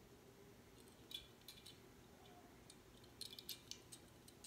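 Near silence with a few faint light clicks, a cluster about a second in and another after three seconds, from a small die-cast model car being handled and turned over in the fingers.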